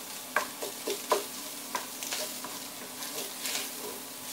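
Ground bratwurst frying in a heavy skillet, sizzling, while a wooden spatula scrapes and taps against the pan every half second or so as the meat is broken up. A faint steady hum runs underneath.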